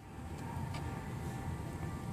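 Electric power-seat motor of a 2008 BMW 528i running steadily while the seat switch is held, starting a moment in.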